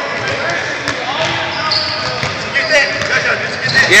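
Basketballs bouncing on a hardwood gym floor, a few scattered bounces, with boys talking in the background.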